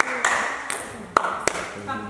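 Table tennis ball clicking off the rackets and the table in a few sharp, separate strikes, the loudest a little over a second in.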